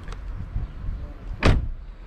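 A car's front door is shut once with a single solid thump about one and a half seconds in, over a steady low rumble.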